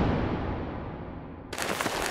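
Cartoon fight sound effects: a noisy crash fading away, then a sudden new burst of noise about one and a half seconds in.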